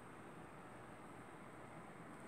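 Near silence: faint, steady room tone with a light hiss.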